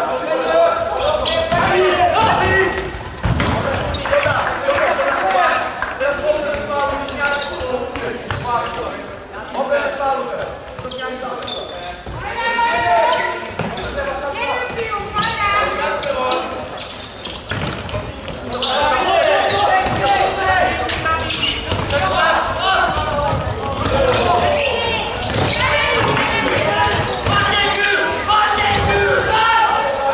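Futsal game sounds in a large sports hall: repeated knocks of the futsal ball being kicked and bouncing on the hard court, under voices shouting, with the hall's echo.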